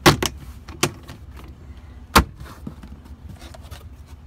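Plastic interior trim panels of a 2012 Jeep Liberty's cargo area being handled and pressed back into place: four sharp clicks and knocks, the loudest at the very start and just after two seconds in.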